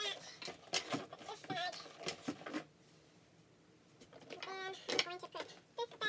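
A woman's low voice speaking in two short stretches, the words too indistinct to make out, over brief knocks and rustles of handbags being set on wooden shelves.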